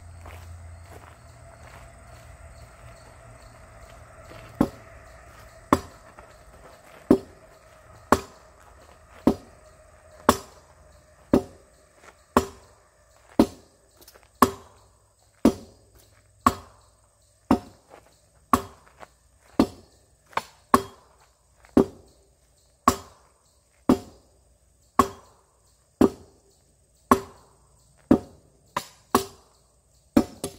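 Steel arming sword striking a pell of rubber tires hung on a wooden post. The blows land as sharp chops about once a second, starting about four seconds in, with a few coming in quick pairs near the end.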